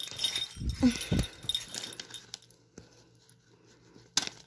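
Handling noise of first-aid kit supplies and their packaging being moved about: scattered clicks, rustles and light clinks in the first two seconds, then quiet.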